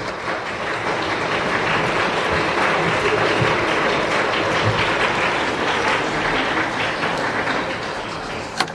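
Audience applauding steadily, tapering off near the end.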